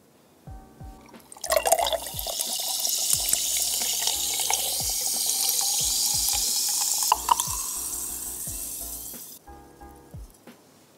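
An orange drink poured in one long stream into a glass, starting about a second in and tapering off near the end, over a light background music beat.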